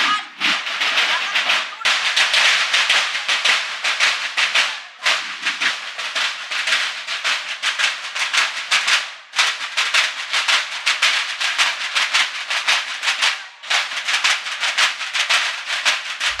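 Marching snare drums of a school banda de guerra (drum-and-bugle corps) playing a fast, rattling cadence, broken by short pauses every few seconds.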